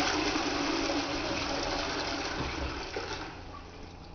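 Caroma toilet flushing: water rushing and swirling through the bowl, gradually fading as the flush runs down.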